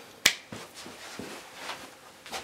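A single sharp click about a quarter second in, followed by a few faint soft knocks and rustles of a person getting up from a chair and moving away.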